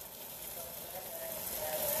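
Cabbage stir-frying in a pan, a steady soft sizzle.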